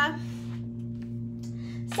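A steady low hum made of a few held tones, unchanging throughout, with nothing else over it.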